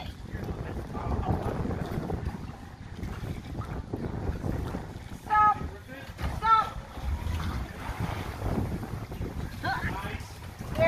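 Low rumble of a boat's motor running at slow speed as the boat eases into its dock slip, with wind buffeting the microphone. Two brief high-pitched sounds come in the middle.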